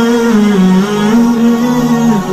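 Music: a slow melody of long held notes, moving up and down in small steps.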